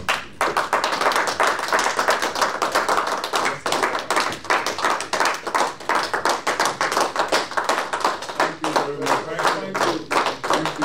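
A roomful of people clapping their hands in applause. It starts suddenly just after the opening and keeps going, with voices coming back in near the end.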